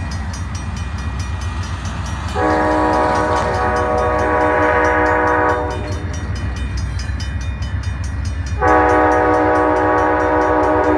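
Approaching diesel freight locomotive's air horn sounding two long blasts, the first lasting about three seconds and the second starting near the end, over a steady low rumble of the train. The long blasts are the opening of the horn signal for a grade crossing.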